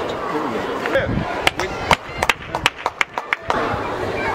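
A few people clapping by hand, a short irregular run of claps lasting about two seconds, over a murmur of crowd voices.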